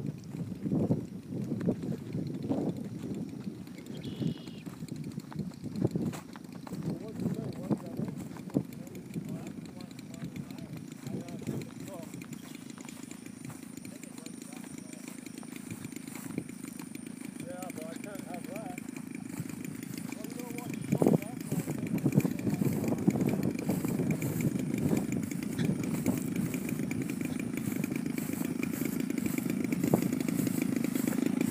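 Engine of a large twin-engine RC model plane running on its one remaining engine, the other having quit in flight, as the plane taxis across grass toward the microphone. It grows steadily louder through the second half.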